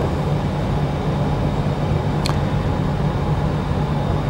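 Steady low rumble with a hum, with a single brief tick about two seconds in.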